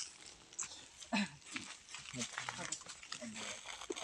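Quiet, low murmured speech: faint voices talking under their breath in short, broken bits.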